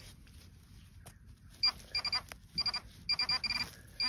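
Handheld metal-detecting pinpointer beeping rapidly in short bursts of one steady high tone from about one and a half seconds in, signalling a metal target close to its tip as it is probed around the hole.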